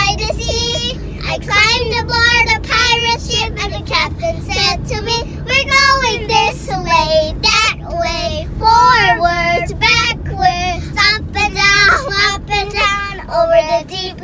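Young girls singing a children's song about the sea, with a woman singing along, over the steady low rumble of a moving car's cabin.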